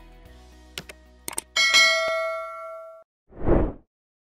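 Subscribe-button sound effect: a few quick mouse clicks, then a bright bell ding that rings on for about a second and a half and dies away. A short whoosh follows near the end.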